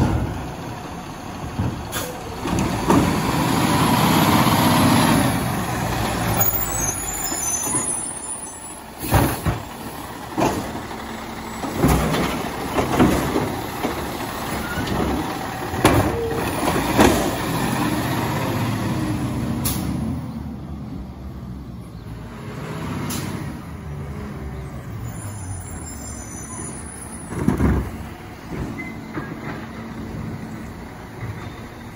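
A Labrie Automizer side-loading garbage truck's diesel engine runs and revs while its hydraulic arm grabs, lifts and empties curbside carts. Sharp knocks and bangs come in a cluster in the middle as the carts are shaken out into the hopper and set back down, and there are short hisses from the air brakes as the truck stops and moves off.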